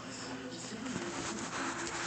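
Television playing in the background: indistinct speech.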